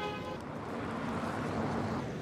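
A car horn sounding a steady two-pitch note that cuts off a moment in, then an even wash of street traffic noise.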